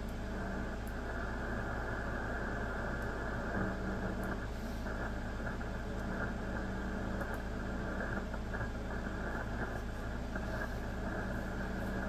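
Steady hiss of static from an SDRplay software-defined radio tuned to 3.650 MHz in the 80-metre amateur band, with no signal heard. The noise stops sharply above about 2 kHz, the width of the receiver's audio filter, and a low steady hum sits underneath.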